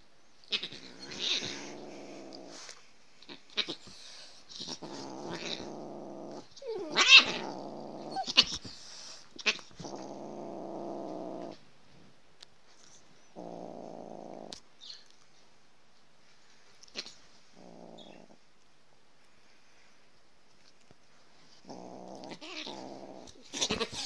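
A cat and a dog wrestling, with low growling in about seven bouts of one to two seconds each. Short sharp sounds come between the bouts, and a loud sharp cry about seven seconds in is the loudest sound.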